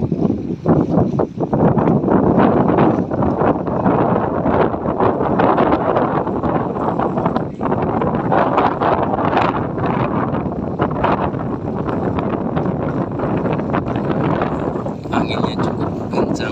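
Wind buffeting the microphone on the deck of a moving ship: a loud, rough rushing that surges in irregular gusts.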